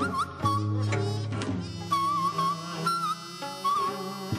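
Live Korean traditional music: a high, wavering wind-like melody line over irregular drum strokes and a low held bass note.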